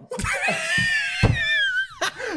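A man's long, high-pitched shriek of laughter, held for over a second and sliding down in pitch at the end, with a few dull thumps underneath.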